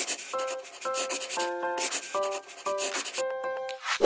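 Scratching strokes of a pen writing across paper, repeated quickly, over a short melody of held notes: the sound design of an animated intro in which a title is handwritten.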